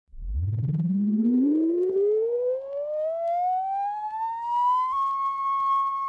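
A siren tone winding up from a low hum to a high pitch over about five seconds, then holding one steady high note.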